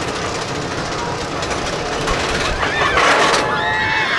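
Steel hyper coaster train running over the crest of its lift hill with a steady rumble, and the riders screaming as it tips into the drop, loudest about three seconds in.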